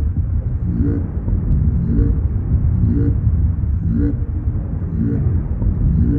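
A loud, steady low rumble with a short pitched pulse repeating about once a second.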